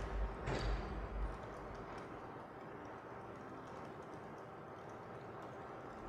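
Faint, scattered keystrokes on a laptop keyboard over low room noise.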